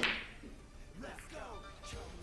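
A single sharp snap right at the start that fades within about half a second, then soft background music.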